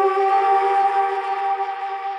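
The end of a techno track with the beat gone, leaving a held synthesizer chord of a few steady tones that slowly fades out.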